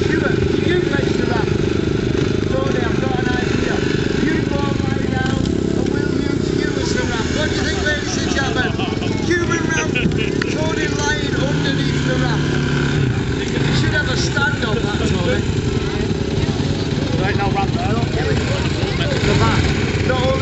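Dirt bike engines running at low revs in the background, with voices over them.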